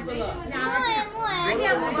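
Several children's voices talking and calling out over one another.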